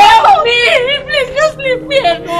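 A high singing voice holding and bending wavering notes in a flowing melody, with no clear spoken words.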